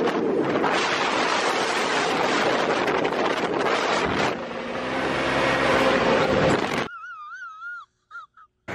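Wind rushing over the microphone of an open Polaris RZR side-by-side driving at speed, with the engine's steady drone showing through in the second half. About seven seconds in it cuts off suddenly to a short wavering, warbling high tone.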